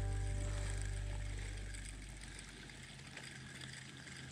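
A low, steady hum of unchanging pitch that fades away over about two seconds, leaving only faint background noise.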